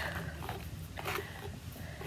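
A hairbrush swishing through a reborn doll's wig hair in a few short strokes, the clearest about a second in, over a steady low hum.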